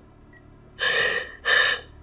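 A woman crying, drawing two gasping sobbing breaths about a second in, close together.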